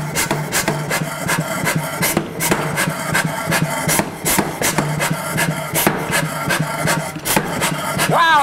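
A power hammer repeatedly striking a hot copper-and-nickel mokume gane billet turned on its side, a few blows a second, with a steady low hum underneath.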